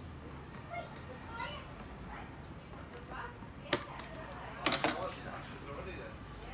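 Scissors snipping through plastic zip ties on a plastic toy shell: one sharp snip a little past halfway, then two or three more close together about a second later, over faint background chatter.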